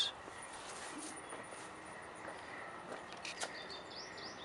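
Outdoor garden ambience: a few short, high bird chirps over a faint, steady insect tone.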